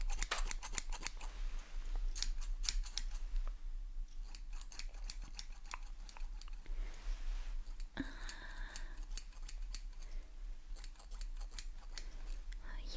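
Metal hairdressing scissors, thinning shears among them, snipping close to the microphone in quick runs of several snips with short pauses between.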